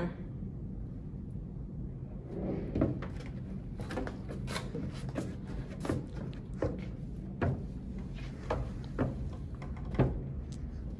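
Footsteps on a wooden practice staircase: irregular knocks and thuds of shoes on the treads as a person steps up, starting about two seconds in, over a steady low hum.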